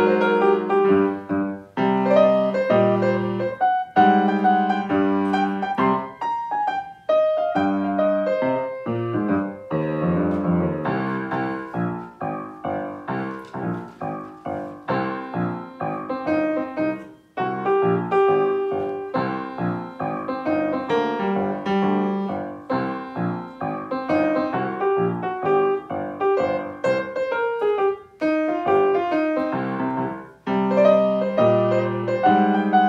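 Grand piano being played, chords and melody from written music, with a few brief breaks between phrases.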